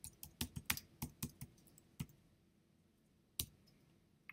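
Computer keyboard being typed on: a quick run of key clicks over the first two seconds as a short line of text is entered, then a pause and one louder click about three and a half seconds in.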